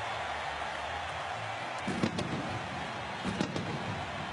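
Stadium crowd cheering steadily after a Buccaneers touchdown, with sharp bangs from the Raymond James Stadium pirate ship's celebration cannons, a pair about two seconds in and another pair a little after three seconds.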